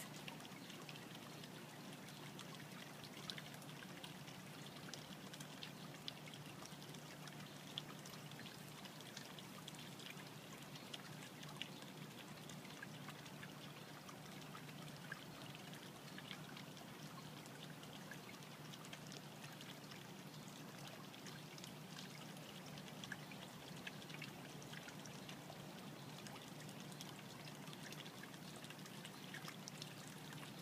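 Quiet outdoor background: a faint steady hiss with a low hum underneath and scattered light ticks, with no distinct event.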